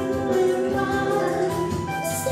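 A woman singing a slow ballad, holding a long note over digital piano accompaniment; her voice fades out near the end.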